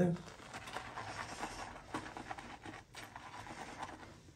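Boar-bristle shaving brush whipping lather in a ceramic shave scuttle used as a bowl: a soft, quick, irregular run of scratching and swishing strokes.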